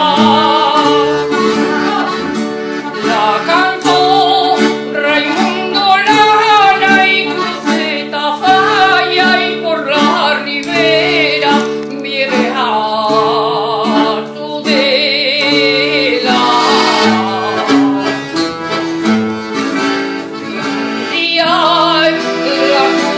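A woman singing a Navarrese jota, her melody wavering and ornamented, accompanied by accordion chords and Spanish guitar.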